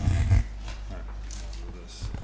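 A short, loud vocal noise close to a microphone, with no words in it, in the first half second. Then quiet room tone with a steady low electrical hum.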